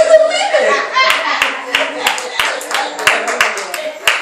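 Hands clapping in a steady rhythm, about three claps a second, starting about a second in, after a brief burst of a man's voice over the church sound system at the start.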